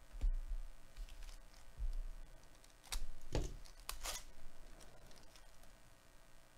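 Foil wrapper of a Bowman Chrome trading-card pack being torn open and handled, with a couple of low bumps first and then sharp crinkling rustles about three to four seconds in.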